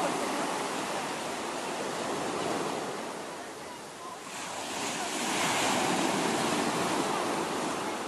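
Sea surf breaking and washing up over sand: a steady rush that ebbs to its lowest about halfway through, then swells again as the next wave breaks.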